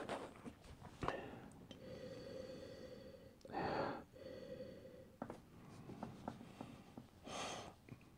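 A man sniffing red wine in a wine glass: one short, sharp inhale through the nose about halfway through, and a second, fainter breath near the end.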